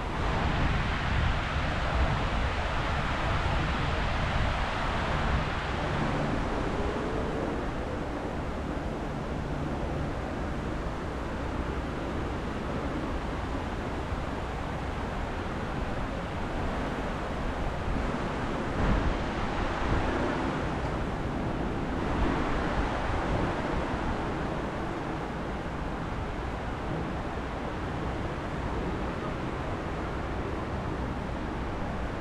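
Steady rushing of the 9/11 Memorial reflecting pool's waterfalls, water pouring down the walls into the pool, swelling louder a couple of times.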